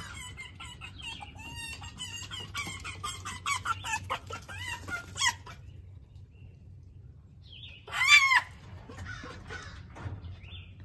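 Pet foxes calling: a run of rapid, chattering chirps for about five seconds, then after a short pause one loud, arching call about eight seconds in.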